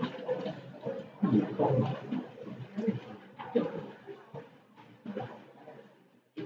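A person's voice talking in short, indistinct phrases, growing quieter toward the end.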